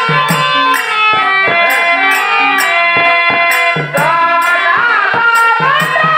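Traditional Telugu stage-drama music: a harmonium holds sustained chords while a hand drum and a jingling percussion strike a regular beat, and a voice begins singing about four seconds in.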